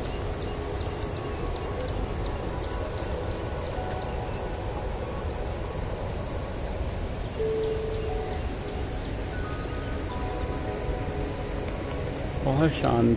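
Steady rushing of a wide river flowing over rocks and low weirs. A bird chirps rapidly in the first few seconds, and soft music plays faintly underneath.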